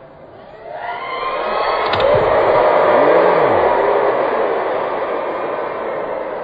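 Large concert crowd screaming, rising sharply about a second in and staying loud.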